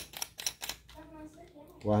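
A few light clicks and knocks of a handheld camera gimbal being handled and folded, followed by a spoken word near the end.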